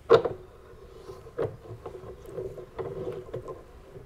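Brass gas fitting assembly being handled and screwed onto a threaded pipe nipple: a sharp click as it starts, another a little over a second in, and light ticks and scrapes between, over a faint steady hum.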